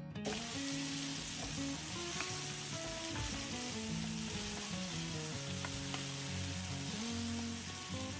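Diced tomatoes and onions sizzling in hot oil in a frying pan, stirred with a spatula. Soft background music plays underneath.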